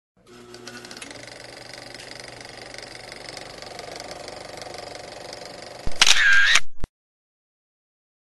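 Logo intro sound effects: a steady, quieter layer for about six seconds, then a click and a short, loud burst with a tone that dips and rises again, cut off abruptly just before the seventh second.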